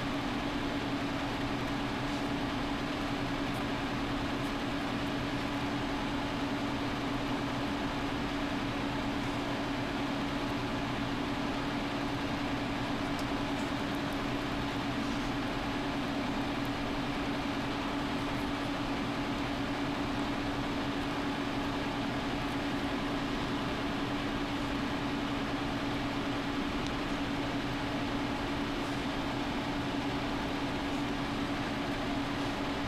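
A steady hum with hiss, unchanging throughout, with one low tone standing out.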